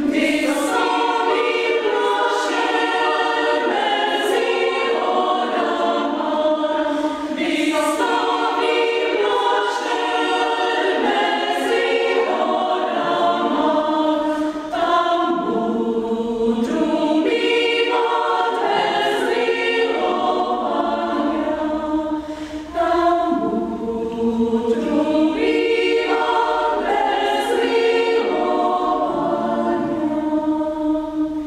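Women's chamber choir singing a cappella in several parts, with a short breath between phrases near the end.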